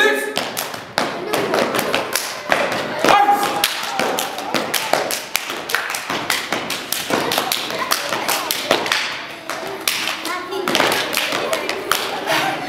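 Stepping: several men stamping their feet and clapping together in a fast percussive rhythm, with a few short vocal calls mixed in.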